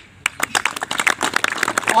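Crowd applause: many people clapping, starting about a quarter second in and keeping up a dense, irregular patter.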